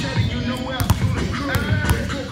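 Hip-hop music with a rapped vocal over a heavy beat, and a basketball bouncing on a hard gym floor.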